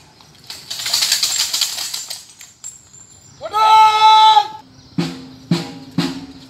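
Police ceremonial parade: a rustling flutter about a second in, then a loud held call lasting about a second that rises at its start and drops at its end, and then snare drum strikes, two beats half a second apart, over a low steady tone near the end.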